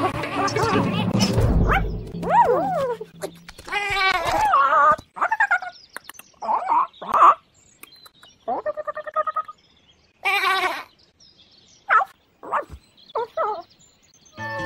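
Cartoon animal-character voices: a string of short bleats and squeaky cries from a lamb and other young animals, gliding up and down in pitch, with pauses between them. Low music sits under the calls during the first few seconds.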